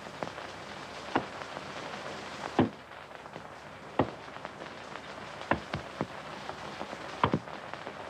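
A series of short, sharp taps, about one every second or so, over the steady hiss of an old film soundtrack.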